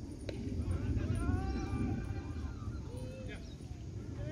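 People talking, with a low rumble of wind on the microphone underneath. One sharp knock sounds about a third of a second in.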